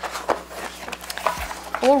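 A small cardboard product box being handled and worked open on a glass tabletop: a string of light scrapes and taps, with a low bump about halfway through.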